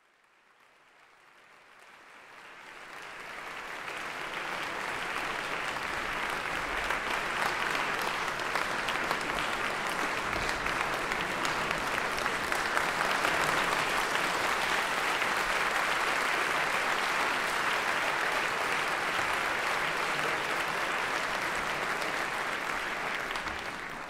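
Concert audience applauding, a dense steady patter of clapping that fades in over the first few seconds and fades out near the end.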